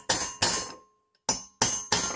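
A hammer tapping a steel punch against a Kohler Courage cylinder head right beside the valve guides, making about five sharp metallic taps with a brief ring after each and a pause of about a second in the middle. The taps peen the head around the guides so that the guides, especially the exhaust one that had shifted, stay put.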